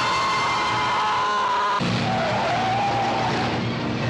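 A car's tyres screeching in a long, steady squeal. About halfway through it gives way to a lower steady drone of a car engine, with a wavering higher tone over it.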